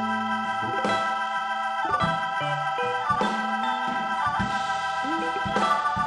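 Live band playing an instrumental passage: sustained organ-toned keyboard chords with electric guitar, over a bass line that moves every second or so, and a few cymbal-like hits.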